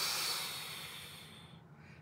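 A long, deliberate exhale blown out through pursed lips as a calming breath, loudest at the start and fading away over about a second and a half.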